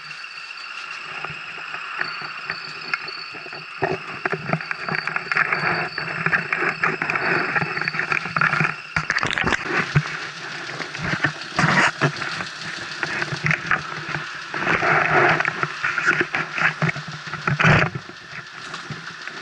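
A 125 cc scooter engine running at a standstill, with rattling and knocking close to the microphone that grows busier and louder from about nine seconds in.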